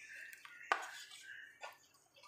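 Steel spoon stirring a thick fenugreek-and-yogurt paste in a ceramic bowl, scraping softly against the bowl with a couple of sharp clinks, the loudest just under a second in.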